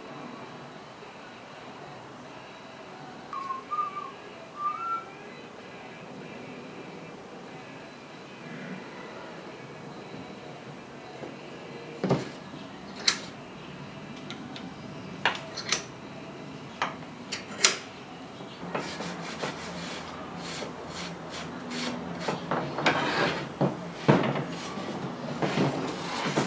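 Clamps and wooden strips handled on a workbench while glued laminations are clamped up. Sharp clicks and knocks start about halfway through and grow into a busy run of clicking, knocking and scraping near the end as the clamps are set and tightened. Earlier there is only a low steady background with a short whistled chirp.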